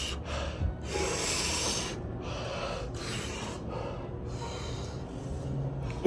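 A man breathing hard in and out through his mouth, a series of long breathy huffs about a second each, trying to cool a mouth burning from very spicy noodles.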